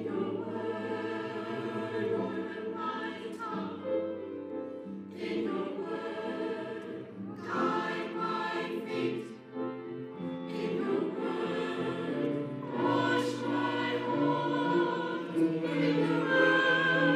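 Mixed church choir of men's and women's voices singing together in long, held phrases.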